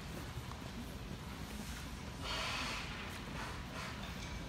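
Quiet hall ambience: a steady low rumble, with one short breathy hiss a little after two seconds in.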